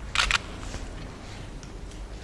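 Camera shutters firing in a quick burst of sharp clicks about a quarter second in, followed by a few fainter scattered clicks.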